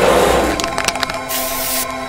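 Electronic soundtrack music with a few sharp cracking hits a little over half a second in, then a short burst of hiss.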